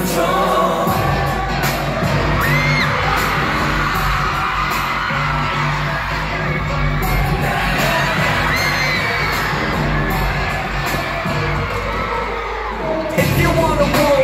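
Live K-pop played loud over an arena sound system, with a heavy bass beat, as a dance section is performed, and fans screaming and cheering over it. The bass drops out briefly near the end, then the music comes back in louder.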